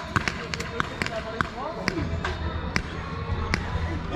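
Paintball markers firing: about a dozen sharp pops, irregularly spaced, with voices calling out around the middle.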